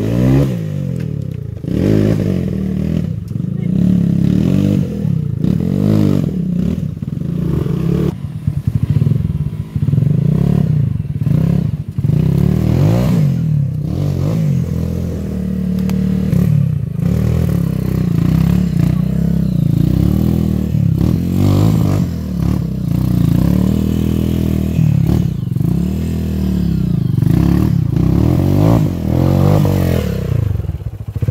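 Dirt bike engine revving up and down in repeated surges under load on a steep, rocky climb, with occasional knocks.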